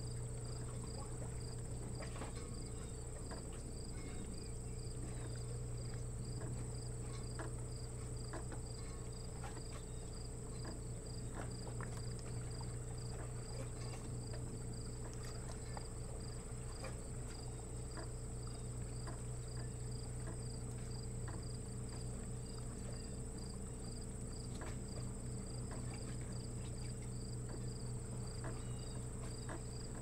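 Insects singing in a steady chorus: a continuous high trill with a regular pulsing chirp a little lower, over a steady low hum and scattered faint clicks.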